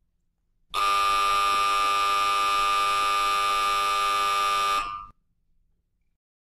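A loud, steady, buzzer-like tone held unchanged for about four seconds. It starts abruptly just under a second in and cuts off quickly with a short fade near the end.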